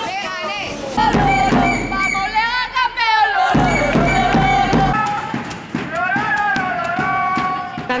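Supporters chanting and singing in high voices, with repeated bass drum beats for the first few seconds.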